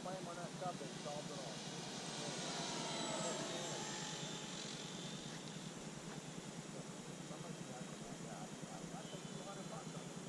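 Electric RC model airplane flying past, its motor and propeller whine swelling to a peak about three seconds in and then fading as it moves away.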